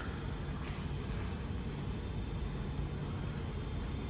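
Steady low hum of airport lounge room tone, with a faint click about two-thirds of a second in.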